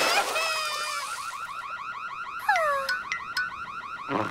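A cartoon crying sound effect: a fast, high warbling wail like an alarm, with a sobbing cartoon voice over it in the first second and a falling whistle-like slide about two and a half seconds in.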